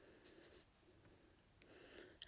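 Near silence: room tone, with faint soft rustles of needle and crochet thread being worked through a thread-wrapped bead.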